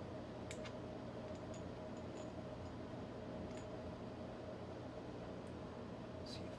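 A few light, scattered clicks of small plastic model road wheels being picked up and set down on a work board, over a steady background hum.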